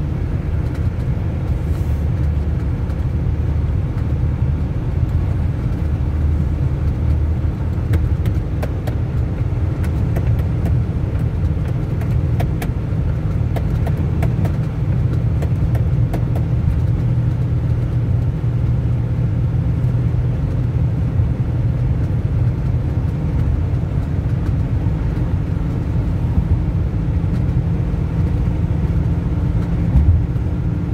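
Steady low rumble of a car's engine and tyres, heard from inside the cabin while driving at motorway speed. A scatter of faint clicks comes through from about a quarter of the way in to about halfway.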